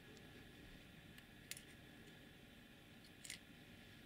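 Near silence with a few faint clicks, the clearest about a second and a half in and just after three seconds, as the laser module is slid out of the keyring laser pointer's metal tube.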